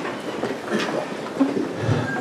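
A pause in a man's speech over a microphone: faint room sound, with a short, quiet vocal sound in the middle and a soft low thump near the end.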